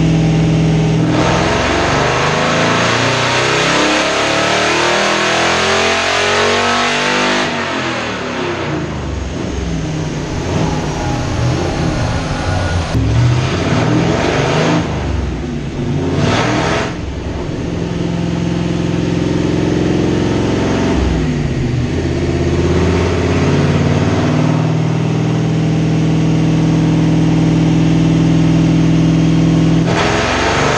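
1933 Ford hot rod's engine on a chassis dynamometer, running at a steady speed and then pulled up under load with its pitch rising for several seconds. It eases off, revs up again loudest around the middle, and settles back to a steady run for the last dozen seconds.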